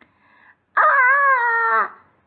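A woman voicing a frightened child's scream: one long, high-pitched 'Aaaaagh', held for about a second starting near the middle.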